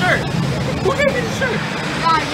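Several people's voices talking and calling in short bursts over a steady background rumble.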